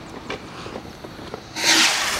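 Faint crackling of a burning fuse, then about a second and a half in a single-tube aerial firework launches with a sudden loud hissing rush.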